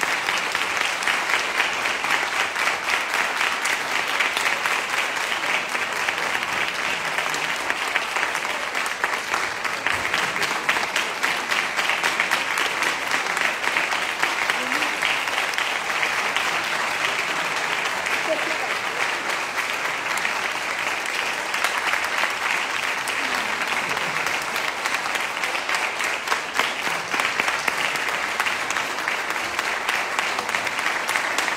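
An audience applauding in a long, steady round of clapping.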